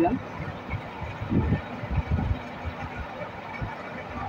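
Chopped gourd pieces tipped into a pan of simmering masala, followed by a steady soft sizzle from the pan and a few dull knocks.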